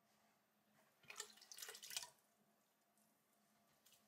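Wet clicking and squelching of slip-covered fingers on soft clay on a potter's wheel, in a short burst about a second in. Otherwise near silence.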